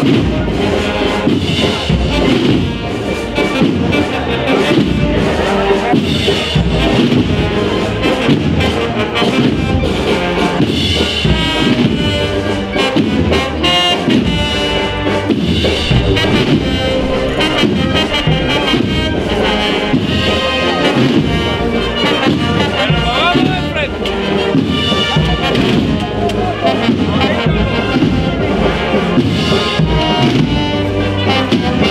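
A Spanish wind band (banda de música) plays a processional march without a break, with trumpets and trombones to the fore.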